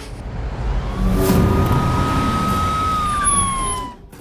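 A car arriving with its engine running, under a single siren tone that comes in about a second in, holds steady, then drops in pitch over the last second as the car passes.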